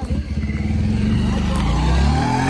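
A motorcycle engine running loud and close, its pitch starting to fall near the end as it goes past.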